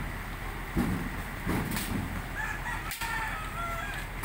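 A rooster crowing in the background, one drawn-out call starting about two and a half seconds in, over a low rumble.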